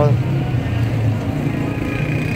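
A vehicle engine running at idle gives a steady low hum under street background noise.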